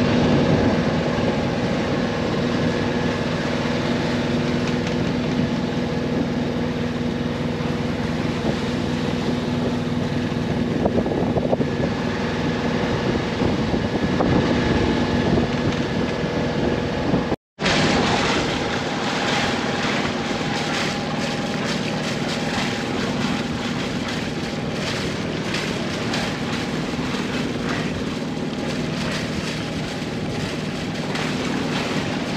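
A small sailboat's auxiliary engine running steadily under the rush of wind and water. The sound drops out for an instant about seventeen seconds in, then carries on with more wind hiss.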